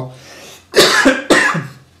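A man coughing twice in quick succession, the second cough about half a second after the first.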